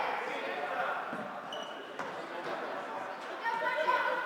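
Floorball game in an echoing sports hall: players' voices calling across the court, with a sharp click of a stick striking the ball about halfway through.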